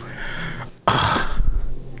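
A man sighing heavily into a close microphone. A soft breath comes first, then about a second in a loud, long breath out lasting about a second.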